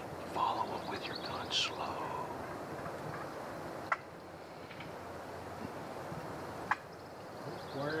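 Wild turkeys gobbling, a rapid rattling call in the first couple of seconds, over a faint steady outdoor background. Two short, sharp clicks come later, about halfway through and again near the end.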